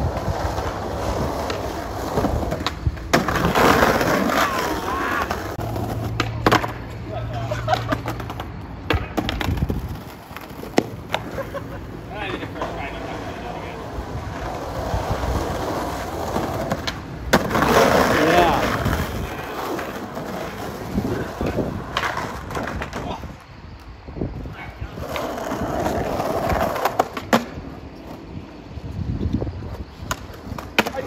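Skateboard wheels rolling over rough asphalt, with sharp clacks and knocks of the board hitting the ground several times.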